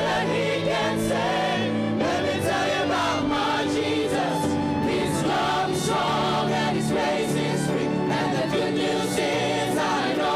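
Church choir and a lead singer performing a gospel worship song, with violins, acoustic guitar and keyboard accompanying.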